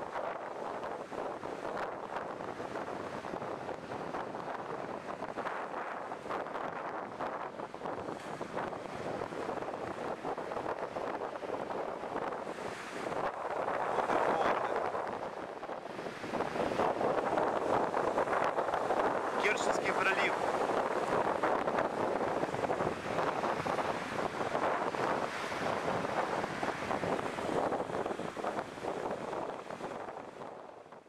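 Small waves washing up and foaming onto a sandy shore, with wind buffeting the microphone. The surf grows louder about halfway through.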